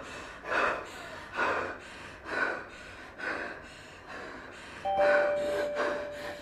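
A woman breathing heavily in loud, rhythmic breaths, about one a second. About five seconds in, a steady tone comes in: a short higher note, then a lower one held.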